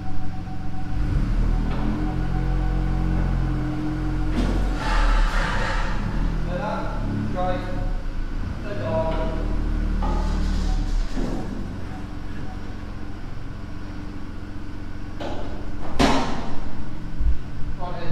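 Ford Fiesta ST's 1.5-litre three-cylinder turbo engine running at low revs, its pitch shifting in small steps, as the car creeps up ramps onto a rolling road. Indistinct voices come and go, and a single sharp knock sounds near the end.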